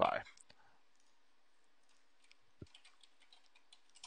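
Faint, scattered clicks of computer keyboard keys being typed, a handful in the second half with one sharper click about two and a half seconds in.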